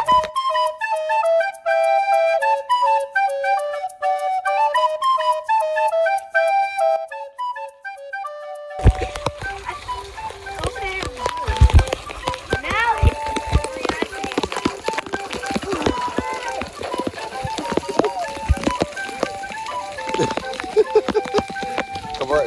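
A simple music melody plays for about nine seconds and then cuts off abruptly. It gives way to the steady hiss of heavy rain outdoors, with knocks from the phone being handled.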